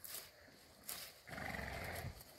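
A cow feeding on cut corn stalks, with a crunch of stalks about a second in, then a short low moo near the end.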